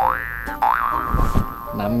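Comic 'boing' sound effect: a springy tone sliding upward, repeated. One rise comes at the start and another about half a second in, which then levels off into a steady tone held for about a second.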